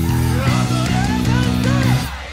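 Fast rock song with a five-string electric bass played fingerstyle over the track, its low notes changing about every half second.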